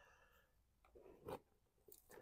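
Near silence, broken about a second in by a few faint crumbly rustles of a hand sifting through damp compost.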